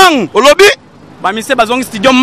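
A man speaking loudly and excitedly, in two bursts with a short pause between them.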